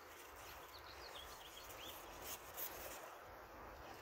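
Faint outdoor ambience with a few short, high bird chirps about a second in, and a couple of faint light taps later.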